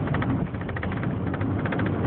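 Car driving along a city street, heard from inside the cabin: a steady low drone of engine and tyre noise with a fast, rough flutter running through it.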